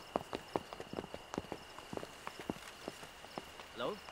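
Footsteps of several people walking over leaves and twigs: irregular sharp snaps and crunches, a few each second. A faint steady high chirring of night insects runs underneath.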